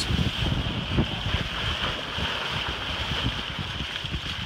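Water rushing and splashing along a sailboat's hull as it sails fast downwind, with wind buffeting the microphone in irregular low rumbles.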